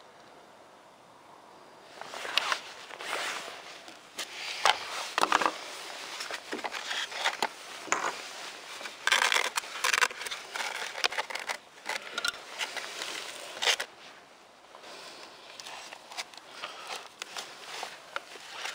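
Hands fitting a LiPo battery into the foam nose of a radio-controlled Twin Otter: irregular scraping, rustling and sharp clicks that start about two seconds in, with a short lull near the end.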